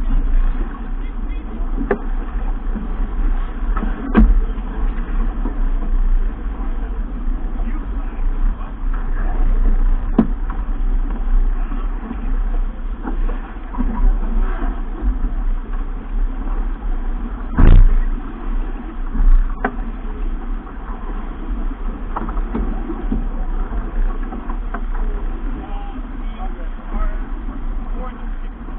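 Wind buffeting the microphone and water rushing along the hull of a keelboat sailing hard and heeled, a continuous rough rumble. A few sharp knocks on deck, the loudest about eighteen seconds in.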